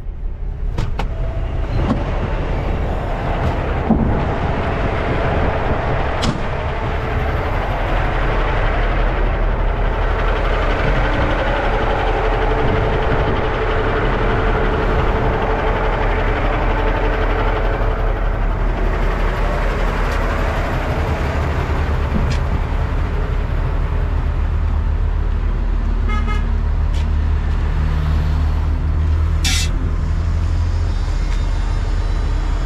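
Kenworth dump truck's diesel engine running steadily, with a few brief clicks near the end.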